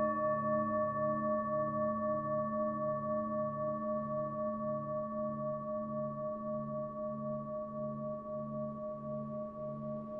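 A singing bowl sounding the chakra's tone A: a steady ringing hum made of several overtones, with a slow wobble about twice a second, gradually fading.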